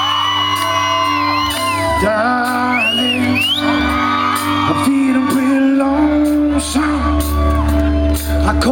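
Live country band playing, a fiddle carrying a melody with sliding notes over steady low held notes, with whoops from the crowd. The bass grows heavier about three quarters of the way through.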